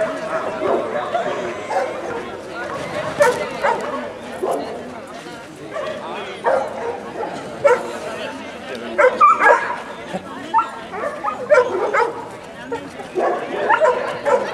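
A dog barking and yipping again and again, short barks every second or two, with people's voices behind.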